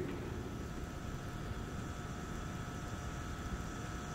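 Steady low background noise with a faint, even hum: the room tone of the recording.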